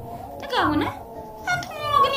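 A woman's voice speaking expressively, with one drawn-out, whining phrase about half a second in whose pitch falls steeply and rises again, then more short phrases near the end.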